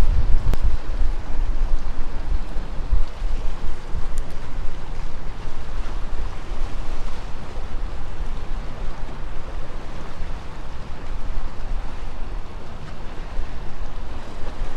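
Strong wind buffeting the microphone: a loud low rumble that rises and falls in gusts, with a fainter hiss above it.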